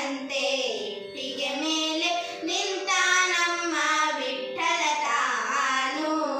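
Two girls singing a devotional song together, holding long notes that waver and slide in pitch.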